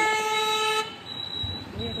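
Vehicle horn honking: one steady, single-pitched blast that cuts off just under a second in.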